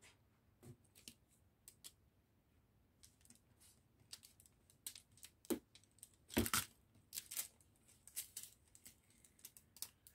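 Sticky tape being pulled off a roll and torn by hand, a string of short crackles and rips with small clicks between them; the longest rip comes about six and a half seconds in.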